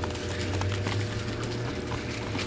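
Light splashing of water and crinkling of a plastic fish-shipping bag as a hand scoops a small fish out, with many small clicks and drips over a steady low hum.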